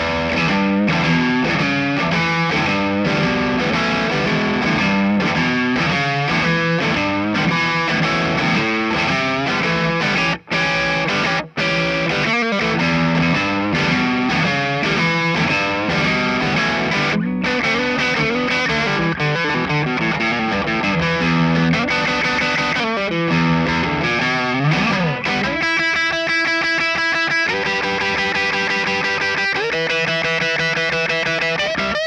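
Electric guitar played through an amplifier on its Stonewall Fat Jazzmaster neck pickup (Alnico V, 7.7k output): chords and melodic lines, with two brief gaps about ten and eleven seconds in. Near the end it changes to fast, even picking with overdrive.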